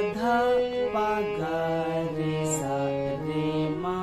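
Harmonium playing a slow melody, one held note after another stepping up and down about every half second, over a sustained lower note.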